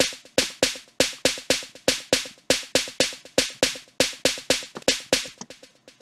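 An 808-style snare drum sample playing back a quick programmed pattern on its own, about four to five sharp hits a second. The last few hits near the end are quieter and closer together.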